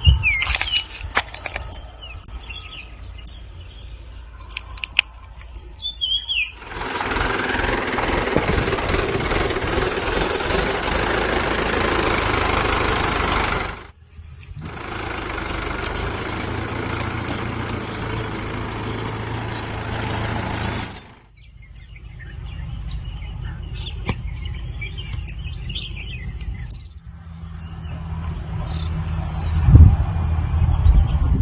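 Outdoor field ambience: birds chirping over a low rumble, broken by two loud stretches of steady rushing noise, each about seven seconds long, that start and stop abruptly.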